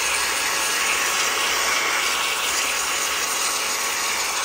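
Cordless handheld electric air duster, a high-speed blower, running steadily on its low setting: a steady hiss of air rushing from its nozzle as it blows dust out of a keyboard.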